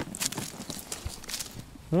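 A landing net holding a freshly caught pike is lifted from the water into an inflatable boat, giving a run of light, irregular taps and rustles from the net and the fish.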